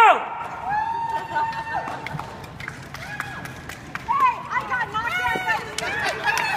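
A loud, sudden cry with a falling pitch as a wheelchair race starts, followed by excited yelling and whooping from the racers and onlookers.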